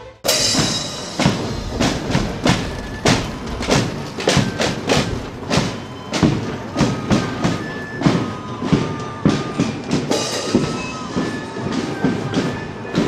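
Marching parade music: drum beats about twice a second, with short high held notes over them.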